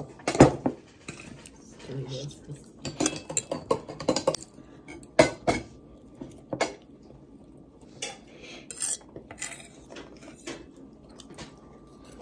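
Metal forks clinking and scraping on plates as people eat: a string of separate sharp clicks, the loudest about half a second in and about five seconds in.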